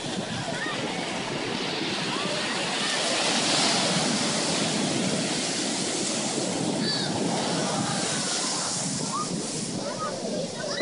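Shore break washing in and out around the anglers' legs, a continuous rush of surf that swells a little about three to four seconds in.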